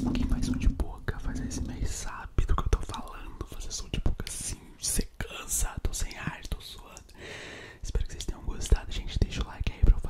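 Close-miked ASMR mouth sounds: a string of wet tongue clicks and lip smacks mixed with breathy whispering, with a soft steady hiss of breath about three-quarters of the way through.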